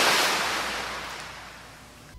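Ocean surf sound effect: a wash of wave noise that fades away steadily.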